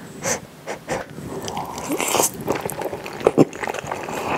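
Close-miked eating of spicy kimchi pasta: noodles slurped in from a fork and chewed, with short noisy breaths through the nose between mouthfuls. Two sharp clicks come a little after three seconds in.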